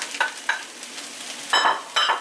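Fried rice sizzling in a hot skillet as beaten egg is poured in, with a few short scrapes of a utensil against the pan and bowl, the loudest about one and a half seconds in.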